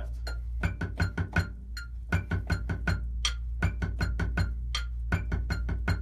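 Drumsticks tapping a rubber practice pad on a marching snare drum in a steady rhythmic pattern of single strokes: the check pattern that sets the beats a roll must wait for. The taps start about half a second in.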